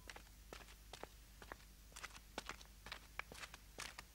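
Footsteps of cloth-soled shoes on stone paving, faint quick steps at a walking pace, about three a second.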